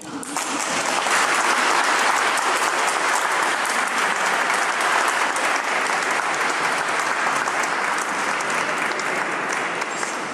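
Crowd applauding in a large stone hall. The clapping starts suddenly, swells to full within about a second, then carries on steadily.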